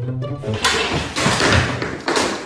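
Background music briefly, then a loud, drawn-out clatter and crash of household objects knocked to the floor as a cat comes down from a shelf.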